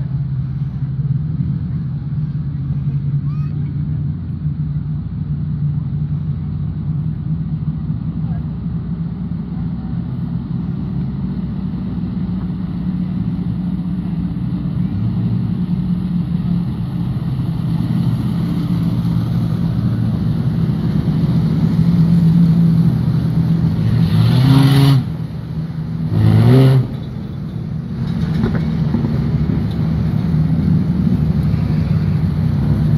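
Several dirt-track race car engines running at low speed as the cars lap, a steady engine drone throughout. Near the end one engine revs up briefly twice, about two seconds apart.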